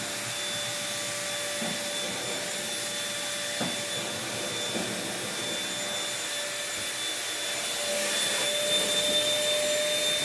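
A small, inexpensive bagless upright vacuum cleaner running steadily, its motor giving a constant whine over the rush of air. It grows louder near the end as it comes closer.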